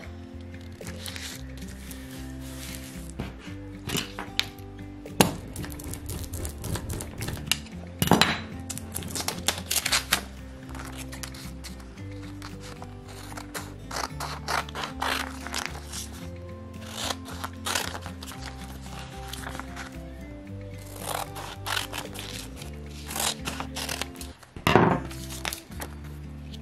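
Background music with steady held notes, over irregular sharp crackles and clicks of a vinyl decal sheet on transfer tape being handled, and scissors snipping through the transfer tape.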